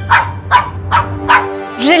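A small dog barking in short, sharp yaps, about four of them, over background music with held notes.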